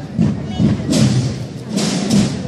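Procession drums beating a slow march: deep thuds roughly once a second, some with a sharper, crisper stroke on top.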